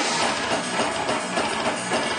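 Metal band playing live: electric guitars and a drum kit driving a steady beat.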